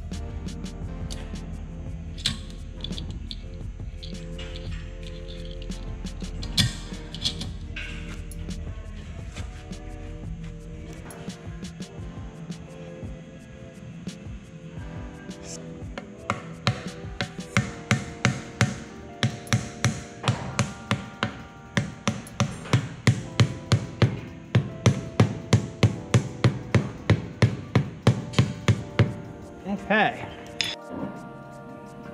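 Hammer blows on a new wheel seal being driven into a heavy truck's wheel hub: a steady run of sharp taps, about three a second, through the second half, over background music.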